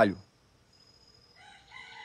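A rooster crowing faintly, its call starting about one and a half seconds in and growing louder toward the end.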